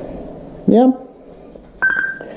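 A short, steady high-pitched beep that starts suddenly near the end and lasts about half a second.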